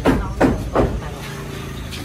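A person's voice in three or four quick, short syllables during the first second, then a steady low background hum.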